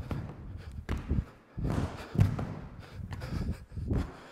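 A series of thuds as a person's feet and hands land on a hardwood gym floor during a fast burpee: jumping back into a plank, a push-up, feet jumping back in, then a vertical jump landing near the end. Hard breathing runs between the impacts.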